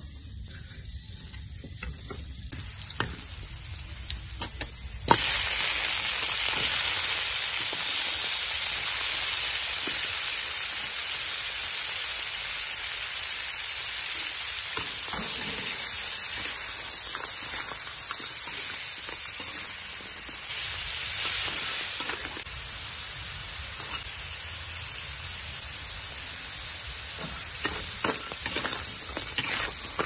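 Crab pieces frying in a steel wok: a sudden loud sizzle about five seconds in as food meets the hot oil, then steady sizzling. A metal spatula scrapes and clatters against the wok as the crabs are stirred.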